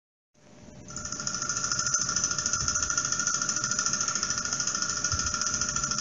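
Film-projector sound effect: a steady, rapid mechanical clatter and whir that fades in about half a second in.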